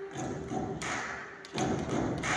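Live orchestral music: a held note with a steady thudding beat about every three quarters of a second.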